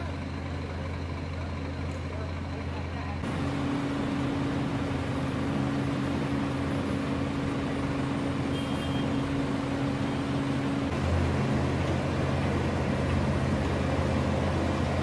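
Heavy diesel engines of a Vögele asphalt paver and a Scania dump truck running steadily at a paving site. The sound changes abruptly about three seconds in, and a steady hum sits over the engine drone until about eleven seconds.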